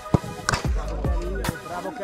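Background hip-hop track with a heavy bass beat.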